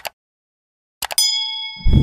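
Sound effects of a subscribe-button animation: a quick double mouse click, another double click about a second in, then a notification bell ding that rings on. There is a low thump near the end.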